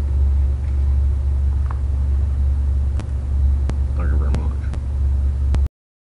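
A steady low hum with several sharp clicks in the second half, then the sound cuts off abruptly near the end.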